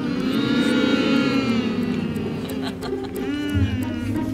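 A man's long, drawn-out hum of appreciation, a closed-mouth "mmm", while tasting food; the pitch bends slowly up and down, with a shorter rise near the end.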